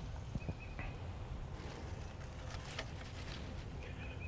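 Faint handling sounds of beautyberry stems and leaves being tucked into a flower arrangement: light scattered clicks and rustles over a quiet outdoor background, with a faint short high chirp about half a second in.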